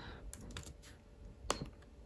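A few quiet keystrokes on a MacBook Air laptop keyboard as a number is typed into a spreadsheet cell, with one sharper key click about one and a half seconds in.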